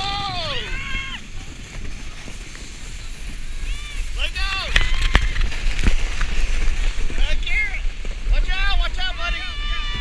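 Several riders screaming and whooping in rising-and-falling cries as a chain of snow tubes slides down a snow run, over a steady low rumble of wind on the camera's microphone. Two sharp knocks come about five to six seconds in.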